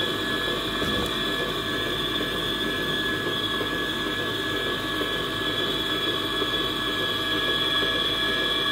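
Stand mixer running steadily on its lowest speed with a constant motor whine, its beater stirring sponge cake batter in a stainless steel bowl.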